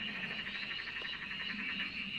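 A steady chorus of calling animals, a high trill with a fast, even pulse, typical of frogs or insects calling together.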